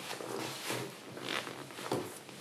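Quiet rustling and scuffing of a person shifting their body and limbs on a yoga mat, with a few short rasping scrapes.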